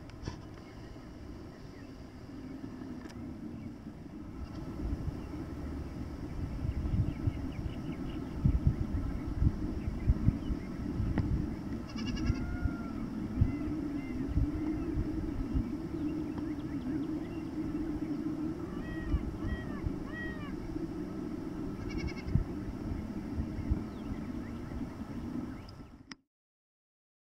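Distant Spanish goats bleating: a call about halfway through, a cluster of short calls and another near the end, over an uneven low rumble.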